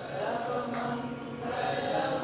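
A woman singing a slow chant into a microphone, holding long notes.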